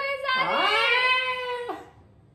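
A young woman's drawn-out, high-pitched vocal cry that swoops up in pitch, holds one long steady note for about a second, then drops off shortly before the end.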